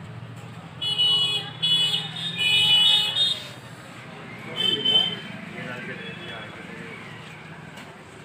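Vehicle horns honking: a run of short, high-pitched honks in the first few seconds and one more about five seconds in, over a steady low rumble of traffic and faint background voices.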